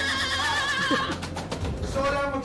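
A high, wavering cry lasting about a second, then short broken sounds.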